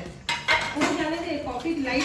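Stainless-steel kitchen vessels and utensils clinking and knocking against each other as they are handled, with a voice talking over them.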